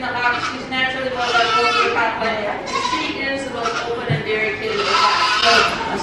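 Dairy goat kids bleating several times, over a woman's voice amplified through a microphone.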